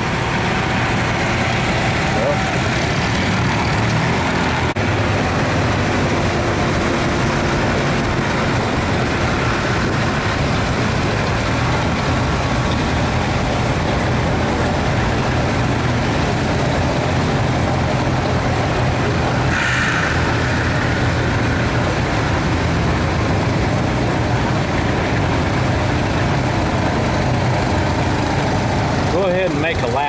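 A vehicle engine running steadily at low speed, a constant low rumble throughout, with a short higher-pitched sound about two-thirds of the way through.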